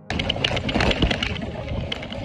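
Loaded bicycle ridden over a rough, stony dirt track, heard from the handlebars: tyres crunching on gravel with a dense, irregular rattle and knocking of the bike and its bags. It sets in suddenly at the start.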